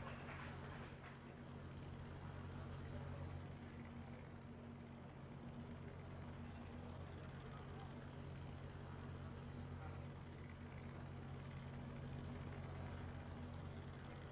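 A faint, steady low hum with a light hiss, unchanging throughout.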